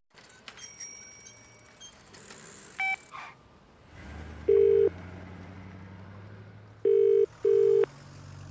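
British telephone ringing tone heard in the earpiece of a call being placed: a single burst and then a double 'brr-brr' after a pause of about two seconds, over a low hum of street traffic.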